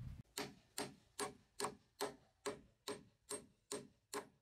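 Hammer driving a nail into a wooden board: nine even blows starting a moment in, about two and a half a second, each with a short metallic ring.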